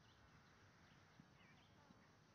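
Near silence with faint, irregular thuds of a Fjord horse's hooves cantering on grass at a distance, and a few faint bird chirps.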